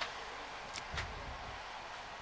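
Faint steady background hiss with two faint clicks about a second in.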